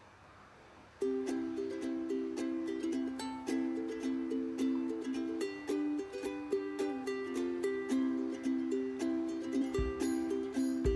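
Background instrumental music with a plucked-string melody of quick repeated notes, starting about a second in after a brief near-silence.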